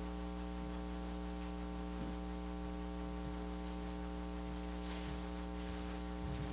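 Steady electrical mains hum, a low buzz with a stack of evenly spaced overtones, over a faint hiss and with nothing else over it.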